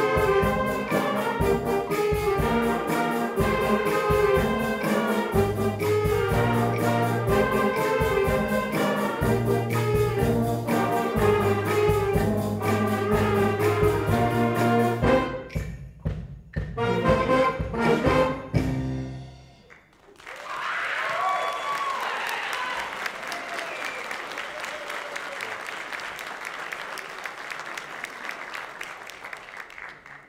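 Middle school jazz big band (saxophones, trumpets, clarinets, with bass and drums) playing a tune with a steady bass line, breaking into a few separated final hits about fifteen seconds in. Audience applause with a few whoops follows about twenty seconds in and fades near the end.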